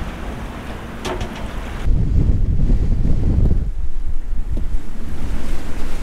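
Strong wind buffeting the microphone over choppy sea water, a low rumbling noise that grows louder about two seconds in.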